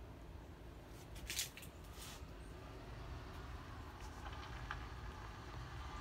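Faint low rumble with a few short scuffs and clicks; the loudest is a brief scuff about a second and a half in.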